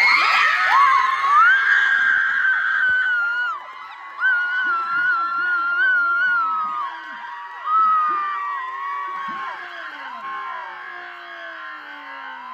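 Several people screaming in excitement, long high-pitched shrieks over a cheering crowd. The screaming is loudest at the start and swells again about four and eight seconds in, then dies down toward the end.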